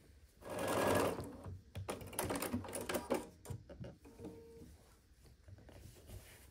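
Bernina B 770 QE Plus sewing machine stitching a seam in a short run of about a second, followed by a series of irregular clicks and handling sounds that die down toward the end.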